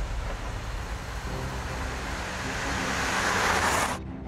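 A car driving toward the listener on a road, its engine and tyre noise growing louder as it approaches.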